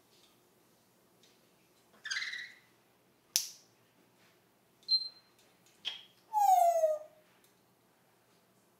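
Pet parrot giving a string of short squawks and chirps, imitating the noise of budgies fighting. There are five calls, the last the longest and loudest, falling in pitch.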